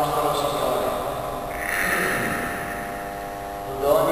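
Liturgical chant sung with long held notes, ringing in a reverberant church. It fades a little between phrases and swells again just before the end.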